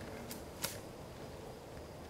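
Two short sharp clicks a third of a second apart, the second louder, over a steady outdoor background hiss.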